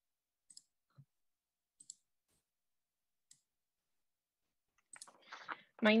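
Near silence broken by four faint, short, high-pitched clicks spread over the first few seconds, then a woman's voice begins near the end.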